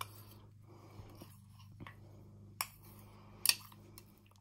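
Table knife stirring and scraping frosting in a small glass jar: faint soft scraping with a few sharp clicks of the metal blade against the glass, the two loudest in the second half. A low steady hum runs underneath.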